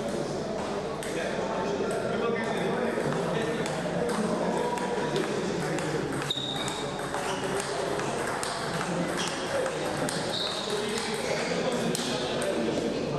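Table tennis ball clicking off bats and table in repeated rallies, with indistinct voices in the background.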